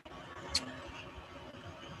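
Quiet pause with low, even background noise from a home microphone and a single faint click about half a second in.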